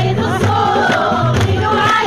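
A group of women singing a Kabyle folk song together, accompanied by hand-beaten frame drums keeping a steady beat of about two strokes a second and by hand clapping.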